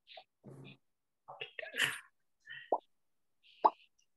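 Two short, sharp pops from the Quizizz game lobby, its sound effect as new players join, about two and a half seconds in and again a second later.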